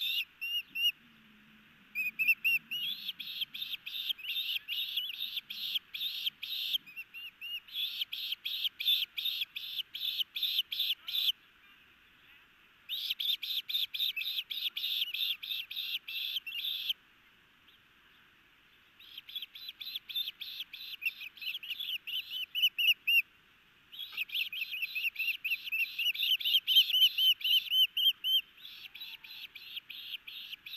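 Ospreys calling at the nest during a fish feeding: runs of short, high, upslurred chirps, about three or four a second, in bouts of several seconds broken by brief pauses. This is typical of a chick begging for food as it is fed.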